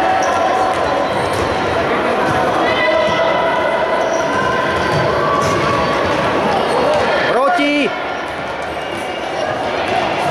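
A futsal ball being kicked and bouncing on a hard indoor court during play, among shouting voices in a large sports hall.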